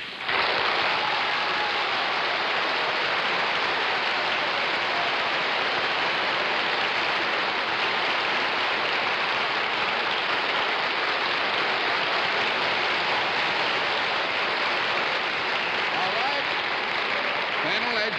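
Studio audience applauding a guest's entrance: steady, unbroken clapping that starts suddenly just after the start.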